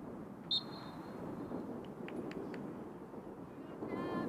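Open-air ambience of a playing field: a steady low background rumble, with one short, sharp high-pitched sound about half a second in, a few faint ticks, and a brief pitched call near the end.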